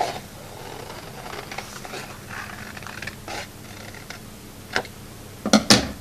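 Scissors cutting through folded construction paper, a quiet papery scraping with a few short snips.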